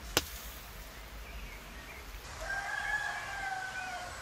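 A sharp click just after the start, then a rooster crowing once: a long call of about a second and a half that falls slightly at the end.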